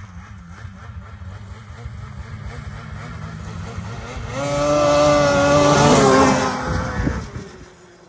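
Polaris Indy snowmobile with the 900 cc two-stroke 9R engine approaching and passing by at speed. A low engine drone builds to a loud, high engine note about halfway through, and the pitch drops as the sled goes past. The sound fades away near the end.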